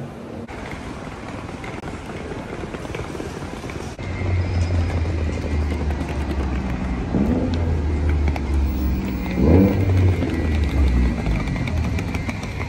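About four seconds of quieter indoor shopping-mall ambience, then city road traffic: a steady low rumble of engines, with an engine revving up twice in the second half.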